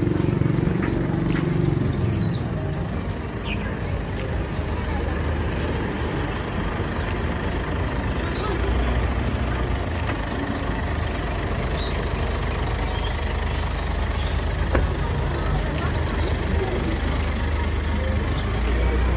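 Busy outdoor market ambience: indistinct voices over a steady low rumble of passing vehicles.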